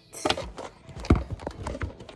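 Irregular knocks and rubbing from a hand grabbing and handling the phone that is recording, with one sharp knock about a second in.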